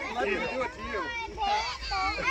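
A group of young children playing, many high-pitched voices calling over one another.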